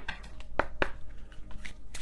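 An oracle card deck being shuffled by hand: a run of light card flicks and taps, with two sharper snaps a little before the middle.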